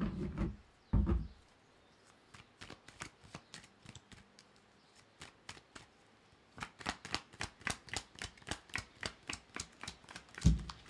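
A deck of tarot cards being shuffled by hand: a thud about a second in, scattered card clicks, then a steady run of sharp card slaps at about three a second in the second half.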